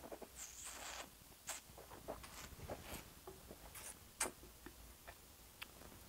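Quiet sounds of a taster working a sip of red wine: a short hissing slurp about half a second in, then scattered small wet clicks and smacks of the mouth.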